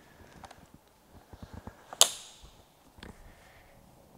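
Quiet handling noise: a few soft low knocks, one sharp click about halfway through with a brief ring after it, and a fainter click near the end.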